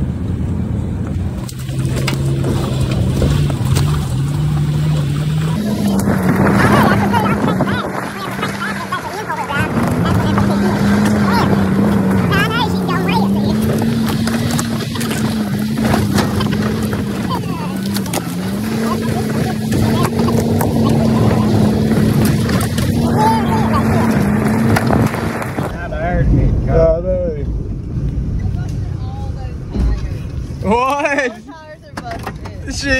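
SUV engine heard from inside the cabin, working hard on a rough dirt trail. Its pitch steps up about five seconds in and holds, wavering slightly, for some twenty seconds, then falls away near the end into a low rumble. Knocks and jolts from the rough ground run through it.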